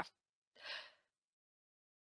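A single short breath from the presenter, a bit over half a second in; otherwise silence.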